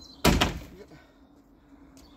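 A single loud slam about a quarter second in, dying away within half a second.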